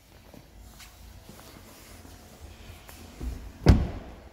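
Faint shuffling and handling noise, then one heavy, low thump near the end.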